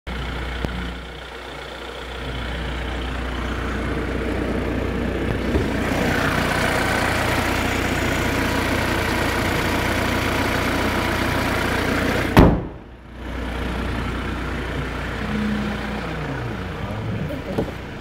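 2019 Hyundai Tucson's CRDi four-cylinder diesel engine idling steadily. A single loud bang comes about two-thirds of the way through, after which the idle sounds quieter.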